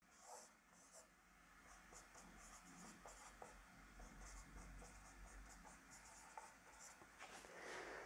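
Faint squeaks and scratches of a marker pen writing on a whiteboard: a run of short strokes.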